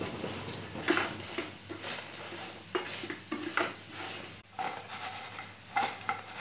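A spatula scraping and knocking in a nonstick kadai at irregular intervals, as spice-coated idli pieces are stirred and tossed in sizzling oil to fry them crisp.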